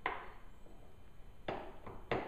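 Two sharp knocks about a second and a half apart as the riser kit's subframe unit, with the rear bodywork on it, is knocked against the dirt bike's frame while it is being set in place.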